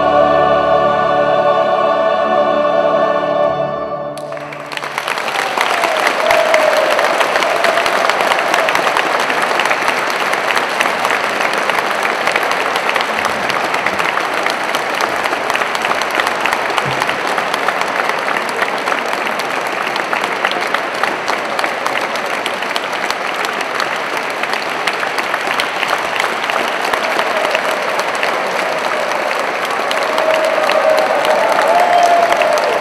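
A mixed choir with string orchestra holds a final chord that cuts off about four seconds in. The concert audience then breaks into steady applause that lasts the rest of the time.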